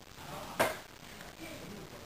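A dart striking a dartboard: one sharp, short thud about half a second in.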